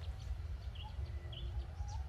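Faint background bird chirps, a few short calls, over a steady low rumble.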